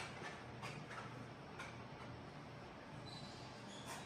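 Faint scattered clicks and light taps, a few in the first two seconds and one near the end, over a low steady hiss, with a few faint brief high squeaks.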